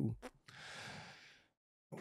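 A man's long audible breath close to the microphone, lasting about a second, right after a spoken sentence ends.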